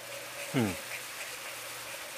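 Melted dark palm sugar bubbling in a hot pan as it cooks down to a caramel syrup, a steady fizzing sizzle.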